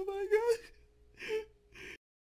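A person's voice: a high, wavering gasp over the first half second, then two short breathy gasps; the sound cuts off abruptly at the end.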